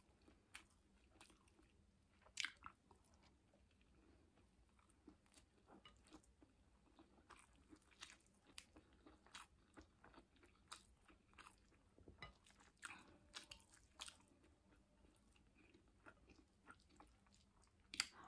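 Faint chewing of rice and sautéed vegetables: soft, scattered mouth clicks and smacks, with one louder one about two and a half seconds in.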